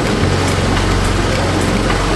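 A loud, steady rushing hiss like rain or spray, with low held notes of background music underneath.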